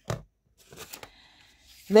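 Faint rustling and a few light clicks of paper being handled and shifted on a desk.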